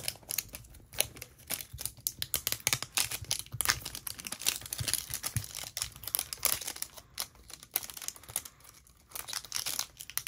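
Clear plastic shrink wrap being picked at and peeled off a metal Poké Ball tin, crinkling and crackling in quick, irregular bits throughout.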